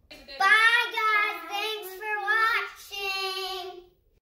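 A young girl singing in a high voice: four drawn-out notes, the last held steady and longest, stopping just before the end.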